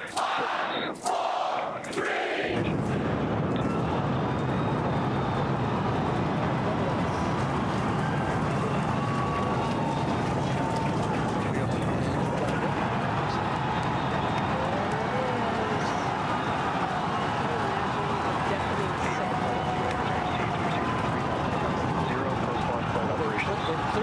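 Starship Super Heavy booster's Raptor engines lighting and firing at liftoff, heard from about two and a half seconds in as a dense, steady rumble that reaches down into the deepest bass and holds unbroken, with crowd cheering mixed in.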